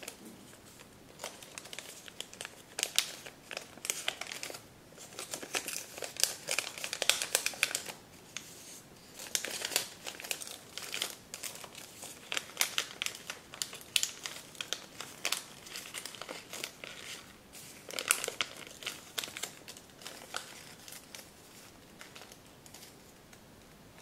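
Paper crinkling and rustling as hands fold and pinch a partly folded origami dolphin, in irregular bursts of crackles with short pauses between.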